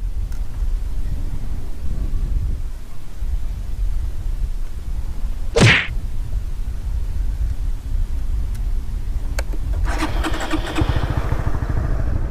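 Honda Winner X 150's single-cylinder four-stroke engine idling steadily, then running up as the motorcycle pulls away near the end. A brief loud noise sounds about halfway through.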